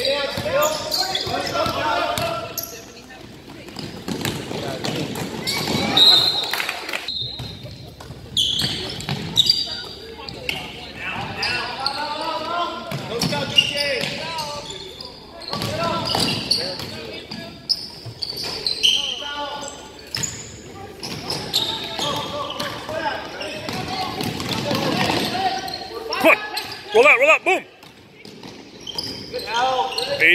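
Basketball dribbled on a hardwood gym floor, with repeated bounces under spectators' voices echoing in the gym.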